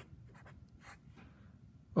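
Marker pen writing on a whiteboard: a series of short, faint strokes as a term is written out.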